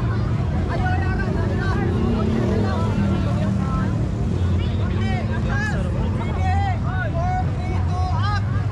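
Crowd of onlookers talking, many overlapping voices, over a steady low rumble.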